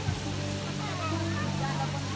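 People talking over a steady low hum and an even hiss.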